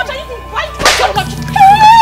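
A single sharp, whip-like crack about a second in as the fight breaks out, then a held, slightly rising high cry near the end, over low background music.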